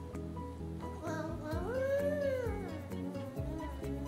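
Background music, and about a second in a toddler's drawn-out high-pitched vocal call that rises and then falls in pitch over about a second and a half.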